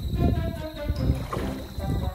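Background music with held notes stepping in pitch.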